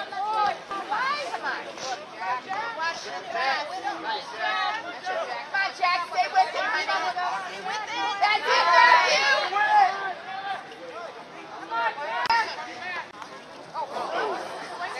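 Spectators chattering and calling out, many voices overlapping with no one voice standing out, swelling louder about eight to ten seconds in.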